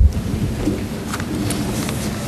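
Sheets of paper rustling and being handled at a table close to the microphones, over a steady low rumble of room noise, with a few faint clicks.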